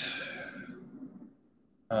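A man's breath out through the mouth or nose, a short hiss that fades away within about a second.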